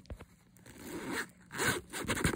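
Handbag zipper being pulled in two rasping strokes: a longer one starting about half a second in and a shorter one near the end.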